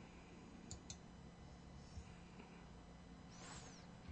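Near silence with faint computer mouse clicks: two in quick succession a little under a second in and a softer one about two seconds in, from clicking at a frozen computer that will not respond. A short soft rustle near the end.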